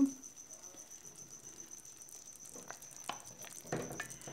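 Quiet room tone for the first couple of seconds, then a few soft knocks and scrapes of a serving spoon against the aluminium pot near the end, as a pequi is lifted out of the thick stew.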